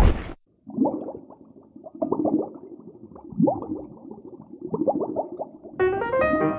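A sharp hit, then a cartoon underwater sound effect of bubbling and gurgling with many short rising blips. Piano music comes in near the end.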